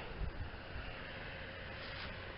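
Faint, steady outdoor background noise: an even hiss and low rumble with no distinct events.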